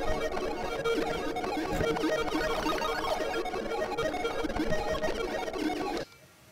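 Eurorack modular synthesizer patch with a frequency-modulated Make Noise Morphagene, playing a dense, chaotic texture over a steady drone tone through spring reverb. It drops away suddenly at the very end.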